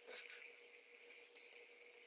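Near silence: a faint steady high-pitched whine, with one brief rustle just after the start.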